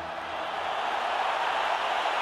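Large stadium crowd cheering and applauding, a steady wash of noise that grows slightly louder.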